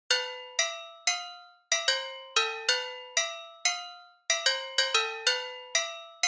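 Bell-like synth melody opening a trap instrumental: single struck notes, each ringing out and fading, about two a second in a repeating phrase with two brief pauses, with no drums yet.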